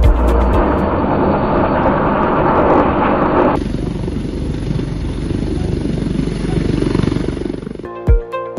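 Helicopter on a helipad, its rotor and turbine noise running steadily. About three and a half seconds in the sound changes abruptly: it becomes duller and a thin high whine comes in.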